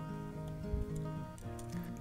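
Soft background music, a guitar-led instrumental bed playing steady held notes.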